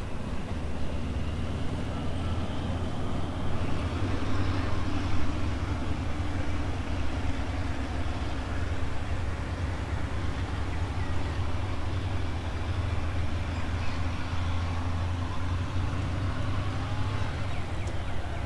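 Steady low rumble of a passenger train hauled by a Hitachi diesel-electric locomotive, rolling slowly away into the station.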